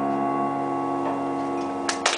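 The final piano chord of a song held and slowly fading. A first sharp clap or two comes near the end.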